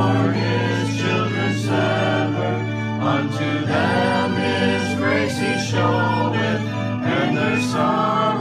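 A small praise band and congregation singing a worship song together, several voices over a steady low accompaniment with acoustic guitar and violin.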